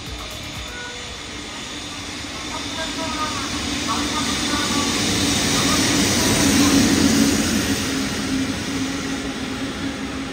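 EF65 electric locomotive hauling a rake of new Seibu 40000 series cars passing close by at low speed: wheels rumbling on the rails over a steady low hum, growing louder as the locomotive approaches and loudest as it goes by about six to seven seconds in, then the cars continuing to roll past.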